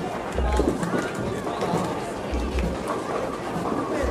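Voices talking amid background chatter, over music with a deep bass note that recurs about every two seconds.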